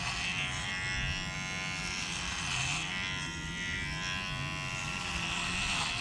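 Cordless electric hair clippers buzzing steadily as they shave long hair down close to the scalp, the pitch wavering slightly as the blades bite into the hair.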